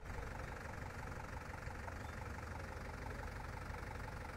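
Farm tractor's diesel engine idling with a steady low rumble and an even, rapid ticking knock.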